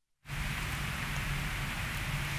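A short stretch of dead silence at the cut, then about a quarter second in a steady hiss with a faint low hum comes in and runs on evenly: a background ambience bed.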